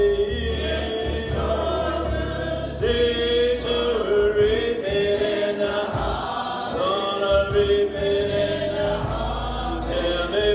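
A group of voices singing a slow gospel song together, with long held notes.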